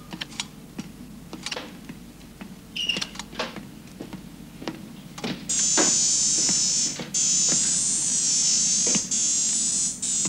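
Scattered small clicks and taps of work on electronics, then about halfway through a steady high-pitched electronic whine starts up, as of a machine switched on and running, breaking off briefly twice.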